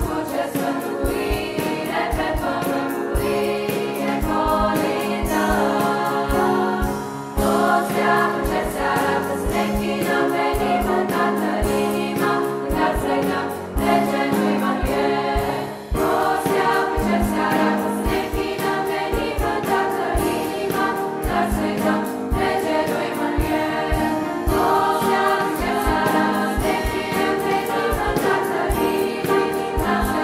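Men's choir singing a Romanian Christmas carol (colindă) in sustained harmony over a steady rhythmic beat, with short breaths between phrases about 7 and 16 seconds in.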